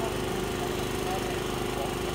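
Steady motor hum with a strong, even pitch that holds without change, and faint voices over it.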